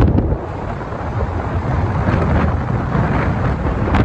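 Wind buffeting a phone microphone in a moving car, a dense, loud rumble with road noise underneath.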